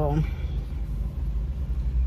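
Steady low rumble of a car's idling engine heard from inside the cabin.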